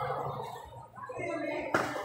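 Indistinct voices talking in the background, with one sharp click about three-quarters of the way through.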